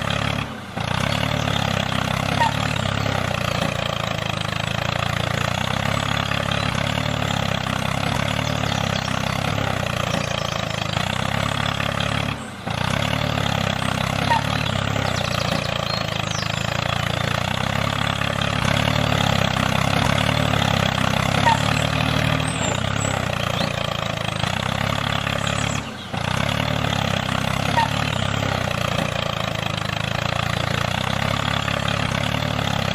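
Engine running steadily at an even pace. It drops away briefly three times: about a second in, near the middle, and near the end.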